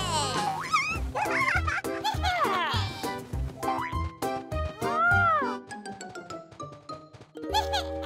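Cartoon soundtrack: playful children's music with a pulsing bass, under wordless cartoon character voice noises and pitch-gliding sound effects, including a long rising-and-falling glide about five seconds in.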